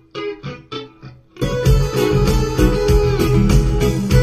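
Soloed guitar track of a live band recording played back alone, a run of single plucked notes, then about a second and a half in the full band mix comes back in with a steady beat.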